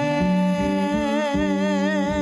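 A woman singing one long held note into a microphone, the note taking on a wide vibrato about a second in. A keyboard accompaniment sustains chords beneath her, its bass notes changing a few times.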